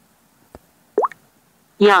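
A phone app's short bubble-like 'plop' sound effect, rising quickly in pitch, about a second in, with a faint click before it. The app plays this effect just before each vocabulary word is read out.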